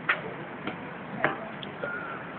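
Four short sharp ticks in an even rhythm, about one every 0.6 seconds, over steady outdoor background noise, with a brief high tone near the end.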